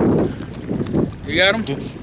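Men's voices, with wind buffeting the microphone. There is a short spoken word about halfway through, and a few faint handling knocks.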